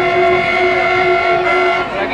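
Horn of an arriving passenger train sounding one long, steady blast that stops shortly before the end.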